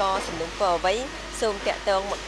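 A woman speaking, with a steady hiss of background noise under her voice.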